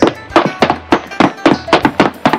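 Footstep sound effects: a quick, loud run of sharp steps, about four a second, falling in uneven pairs as of two walkers.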